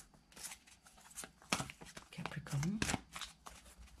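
A deck of tarot cards being shuffled by hand, giving an irregular run of short papery riffles and slides. A brief murmured voice sound comes about two and a half seconds in.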